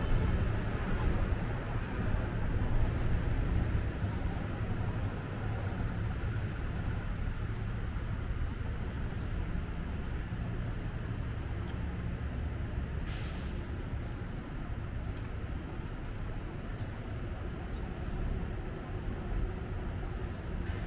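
City street traffic: a steady low rumble of vehicles, with a short hiss about thirteen seconds in.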